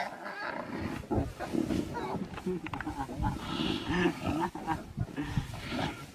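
Large predators growling over a kill, with many short, low, rough growls one after another.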